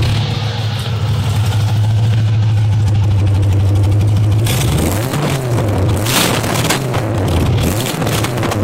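Stock GM LS1 V8 on its first start-up after the swap, running through open headers: it idles steadily, then from about halfway through is revved in several quick blips that rise and fall.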